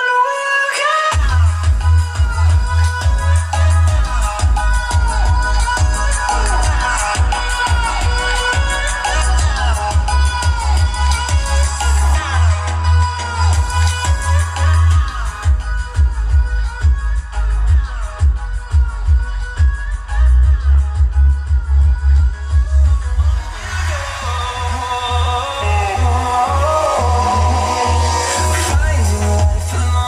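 Electronic pop music with singing, played loud through a Sony car stereo head unit into Sony 6x9 speakers and a bridged Sony subwoofer in a box. Heavy, pounding bass comes in about a second in.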